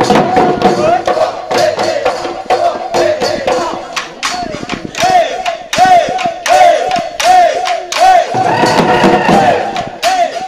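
Several dhol drums beaten hard in a fast Bihu rhythm, with a group of men singing and calling a repeated husori chant over them.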